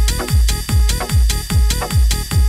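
Techno from a DJ mix: a steady four-on-the-floor kick drum about twice a second, each kick a quick falling pitch sweep into deep bass, over ticking hi-hats and a sustained high synth tone.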